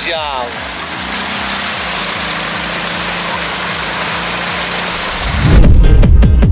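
An ATV engine running under a steady hiss from the muddy water track, with the last of a man's speech at the very start. Loud techno music cuts in about five and a half seconds in.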